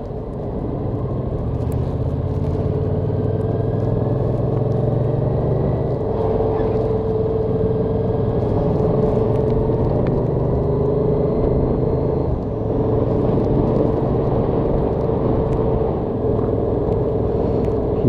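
Yamaha XSR700's parallel-twin engine running steadily on the move, with road and wind noise around it; the engine note eases off briefly about twelve seconds in.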